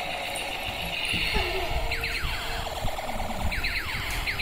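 Battery-powered transforming tank-robot toy changing from tank into robot, its speaker playing electronic sound effects: a steady tone at first, then from about two seconds in a run of quickly falling electronic sweeps, over the whir and rattle of its motor and wheels on the floor.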